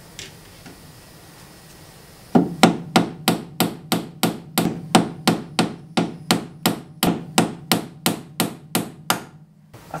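A hammer striking a screwdriver held against the staked locking nut on a BMW E30's front hub: a quick, even run of sharp metal strikes, about three or four a second. It starts a couple of seconds in and stops just before the end. The blows are knocking the staked lip of the nut out of its notch so the nut can be undone.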